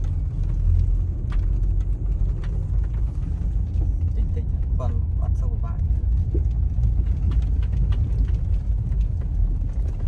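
Lexus RX300 on a rough dirt road, heard from inside the cabin: a steady low rumble of tyres and engine, with frequent small knocks and rattles as the car rides over the ruts.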